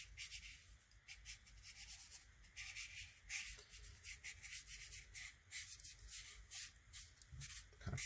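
Faint, repeated scratchy swishes of a wet, flat hake brush's bristles stroking back and forth across cotton watercolour paper, pushing a wash into a smoother gradient.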